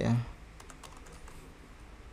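Computer keyboard being typed on: a quick run of light keystrokes as a short word is typed, fading out after about a second and a half.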